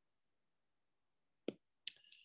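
Near silence, then two sharp taps about half a second apart near the end: a stylus tapping the glass screen of a tablet.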